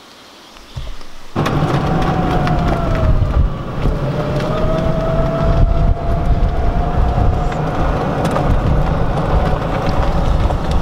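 Golf buggy driving along a path: a low rumble with a steady whine that sags slightly and comes back up, starting suddenly about a second in.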